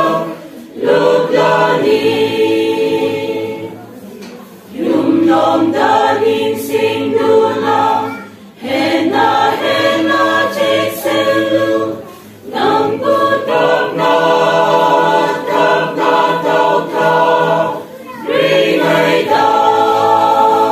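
A choir singing a Christian hymn in sung phrases, with short breaks between phrases about every four seconds.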